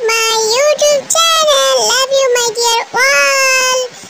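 A very high-pitched, child-like voice singing a short chant in quick phrases, its pitch gliding up and down, ending on one long held note that stops shortly before the end.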